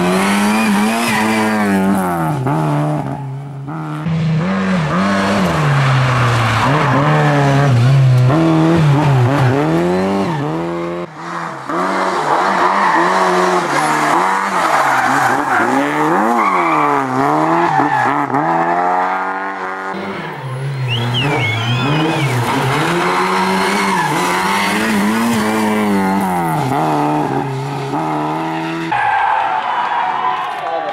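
Lada Classic-series rally car's four-cylinder engine revving hard, its pitch climbing and dropping again and again through gear changes and lifts for corners, with tyre noise as it slides on the loose stage surface.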